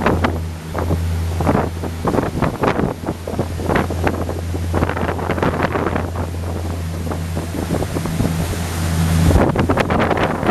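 A 34 Luhrs boat's engines running steadily under way at speed, a constant low drone. Wind buffets the microphone throughout, in irregular gusts, hardest near the end.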